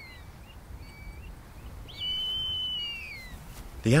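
A bird's long whistled call about two seconds in: one high, steady note that slides down at its end, with fainter short whistles before it.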